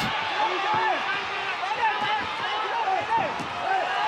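Kickboxing arena crowd: many voices shouting over one another during the fight's exchanges, with occasional dull thuds of kicks and punches landing.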